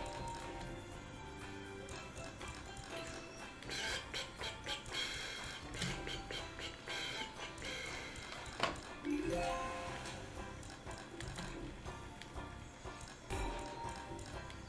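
Online video slot game audio: background music with short chimes and clicks as the reels spin and stop on autoplay.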